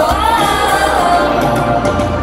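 Live pop concert music: a woman singing into a microphone over a band with heavy bass. The voice fades out about halfway, leaving the bass and beat.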